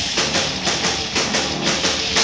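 Live instrumental rock band playing loud: electric guitar and bass guitar over a drum kit, with drum hits striking several times a second.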